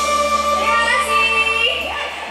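Live dangdut koplo band holding a sustained chord over a steady bass while a high female voice glides upward in pitch. The band's sound cuts off right at the end.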